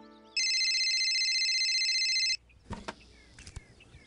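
Flip mobile phone ringing: one steady electronic ring about two seconds long that stops abruptly. A few clicks follow as the phone is picked up and answered.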